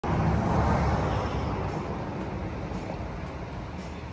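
Road traffic passing on a highway, a vehicle's noise loudest at the start and fading away.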